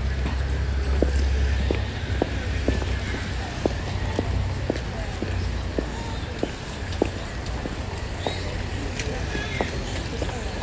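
Footsteps on a paved sidewalk, sharp ticks at a steady pace of about two a second. Under them is a low rumble, heavier in the first two seconds, with faint voices of passers-by.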